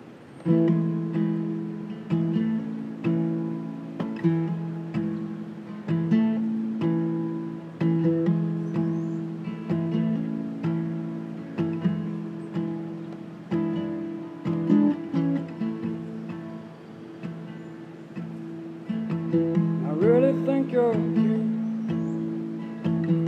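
Acoustic guitar strummed in a steady rhythm, starting about half a second in, each stroke of the chord ringing and fading before the next.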